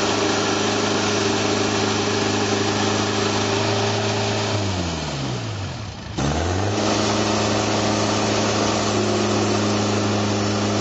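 Wood-Mizer portable sawmill's engine running at a steady speed. About four and a half seconds in it winds down over a second and a half, almost to a stop, then picks straight back up to full speed.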